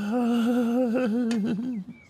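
A man humming a short wavering tune for nearly two seconds, with two faint clicks partway through.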